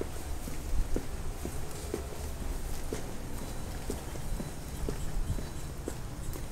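Footsteps on a wet asphalt driveway, about two steps a second, over a steady low rumble.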